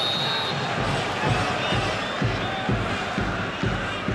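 Football stadium crowd noise: supporters chanting, with a drum beating steadily about twice a second. A short high whistle at the very start is the referee blowing for offside.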